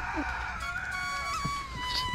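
Chickens calling fairly quietly, a few drawn-out, slightly gliding notes, while a hen feeds from a bowl of bran.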